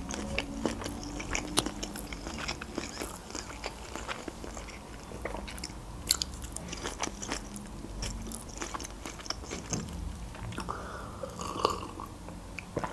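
Close-miked chewing of sushi rolls: soft, wet mouth sounds with many small clicks and smacks throughout.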